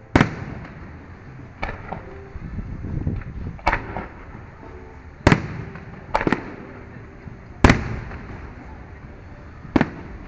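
Aerial firework shells bursting overhead: a sharp bang every second or two, about eight in all, some closely paired, each trailing off briefly.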